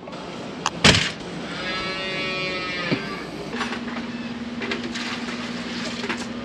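A calf bawls once, a long call that rises and falls in pitch, just after a sharp knock about a second in. A steady low hum starts about halfway through and carries on.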